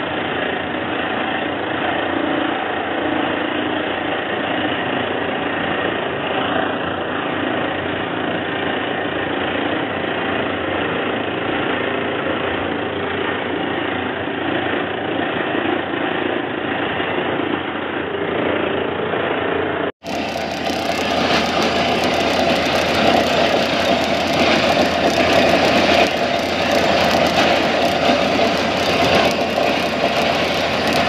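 Borewell drilling rig running steadily, its engine and air blast driving rock dust and cuttings up out of the borehole. About two-thirds of the way through, a sudden cut switches to a louder, brighter stretch of the same steady machine noise.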